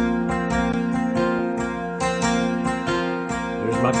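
Recorded acoustic guitar track playing back, a steady run of quick strokes, with compression, stereo widening and added top end applied to it.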